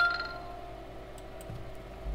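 The last note of a short electronic chime or jingle ringing out and fading within about half a second. A few faint clicks follow, typical of a computer mouse.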